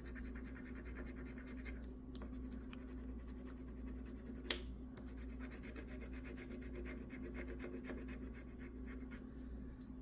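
A penny scratching the coating off a paper lottery scratch ticket: fast, continuous scraping strokes, with one sharp click about four and a half seconds in.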